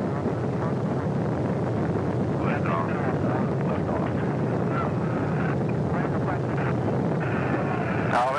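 Saturn V first stage's five F-1 rocket engines igniting and building to full thrust before liftoff: a steady, deep rumble at an even level, with faint radio voice callouts over it now and then.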